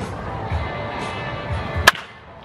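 Background music with a steady beat, and near the end a single sharp crack of a bat hitting a baseball in batting practice.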